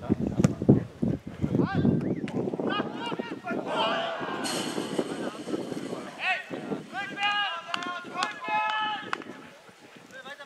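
Several men's voices shouting and calling across an outdoor football pitch, often at once, with a few long drawn-out calls near the end. A sharp thud comes about half a second in.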